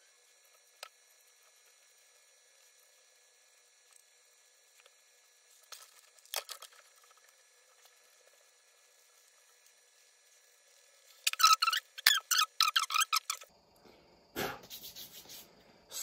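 Steel scissors snipping beard hair close to the skin: a few faint, isolated snips, then, about two-thirds of the way in, a fast run of loud snips for a couple of seconds, about four a second. A shorter, lower noisy sound follows near the end.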